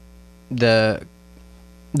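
Steady electrical mains hum made of several fixed tones, running under a single short spoken word about half a second in.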